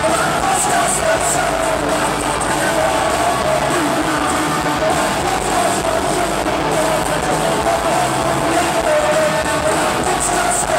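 Live punk rock band playing a song at loud, steady volume, with singing over the guitars and drums.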